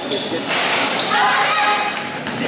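Sounds of an indoor basketball game: a basketball bouncing on the court and voices calling out. A broad rush of noise comes in about half a second in.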